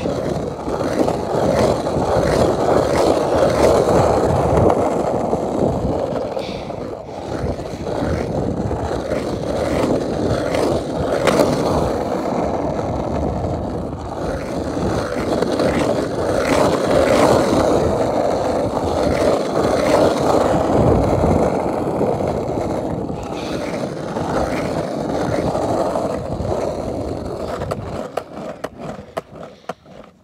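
Skateboard wheels rolling over rough asphalt, heard from a chest-mounted camera: a continuous gritty roll that swells and eases with speed, with a few sharp clicks as the wheels cross cracks. It dies away near the end as the board slows.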